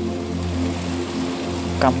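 Rain falling on a flooded rice field and water spilling through a breach in the embankment, a steady hiss, with a low steady hum underneath.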